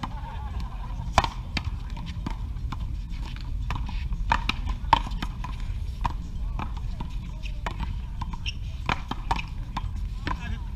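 Paddleball rally: a rubber ball smacking off solid paddles and a concrete wall in a quick run of sharp hits, the loudest about a second in and near five seconds.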